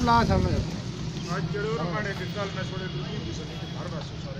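Indistinct voices of people talking in the background, loudest in the first half-second, over a steady low hum that sounds like nearby road traffic.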